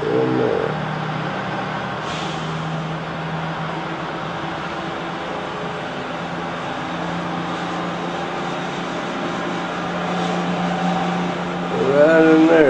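A vehicle engine running steadily: an even low hum with a light hiss over it, its pitch stepping slightly up and down a couple of times.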